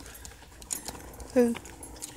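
A voice saying one short word about one and a half seconds in, over faint scattered clicks and rustling.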